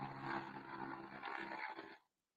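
Faint microphone background: a low steady hum with a light hiss, which cuts off abruptly at the end as the audio drops to silence.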